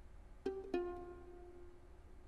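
Two plucked violin notes (pizzicato), the second slightly lower and ringing on for about a second.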